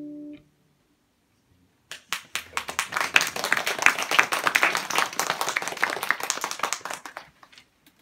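The last acoustic guitar chord rings and is cut off. After about a second and a half of silence, an audience claps for about five seconds, thinning out near the end.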